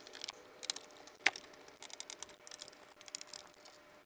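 Light, scattered clicks and ticks of a screwdriver backing small T8 Torx screws out of a plastic radio cover, with one sharper click about a second in.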